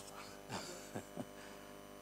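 Steady electrical mains hum made of many evenly spaced steady tones, with three faint short sounds about halfway through.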